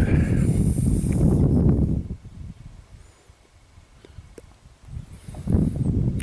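Wind buffeting the phone's microphone: a heavy low rumble for the first two seconds that dies away, then rises again near the end.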